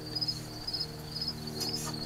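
Insects, likely crickets, chirping outdoors in short trains of high-pitched pulses over a steady low hum.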